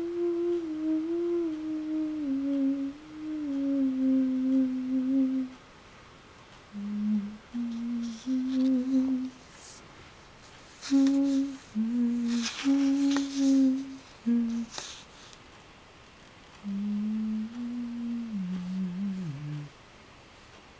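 A person humming a slow, wandering tune to themselves in short phrases with pauses, the pitch sinking low in the last phrase. A few brief clicks and rustles come in the middle.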